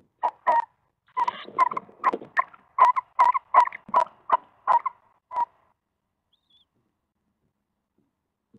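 Tawny owl giving a run of about fourteen short, evenly pitched calls, roughly three a second, for about five seconds, with some scuffling under the first few notes; then it stops.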